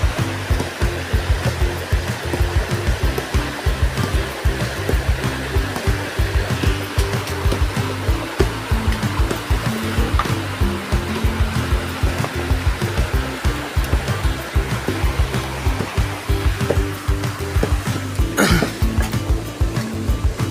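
Background music with a steady beat and a stepping bass line, over a steady rush of flowing river water.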